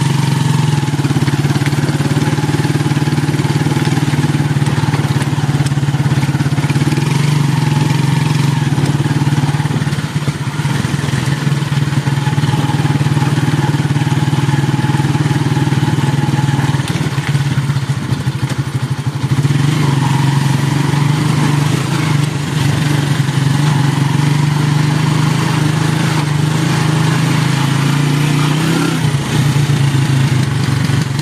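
Small motorcycle engine running steadily while riding, with road and wind noise; the engine note eases off briefly a couple of times.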